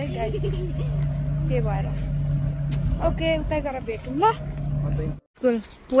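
Voices talking over a steady low motor hum with a rumble beneath it, which cuts off abruptly about five seconds in.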